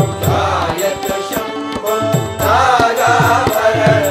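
Devotional Shiva bhajan: a voice chanting long, wavering syllables over a steady low drone, with regular drum strokes.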